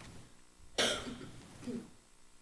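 A person coughs once, a sharp cough about a second in, followed near the end by a short, quieter sound from the throat.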